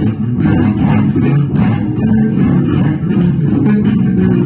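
Electric bass guitar played fingerstyle in a funk groove: a busy, unbroken run of plucked low notes.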